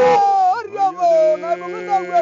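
Samburu men singing a traditional song: a held note breaks off about half a second in into sliding, howl-like vocal glides, and a steady low drone of voices sets in after about a second.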